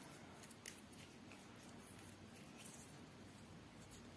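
Near silence: faint handling noise of tatting thread and a wooden shuttle in the hands, with one small click under a second in.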